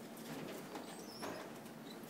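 Faint, irregular footsteps on carpet and rubbing of a handheld camera, with a few soft knocks over quiet room tone.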